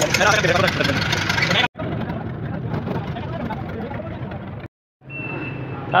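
A man's voice over a steady low engine hum, cut off abruptly to silence twice, at about two seconds in and again just before the five-second mark.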